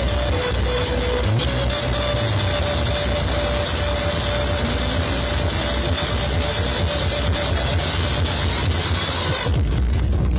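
Loud heavy-bass music played through towering stacks of large loudspeaker cabinets. A held tone runs through the dense mix, and about nine and a half seconds in the treble drops away, leaving mostly the bass.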